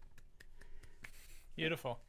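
Faint, scattered light clicks and a brief rustle, then a short vocal sound from a man near the end.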